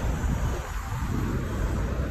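Wind buffeting the phone's microphone outdoors: an uneven low rumble with a hiss above it, easing a little about halfway through.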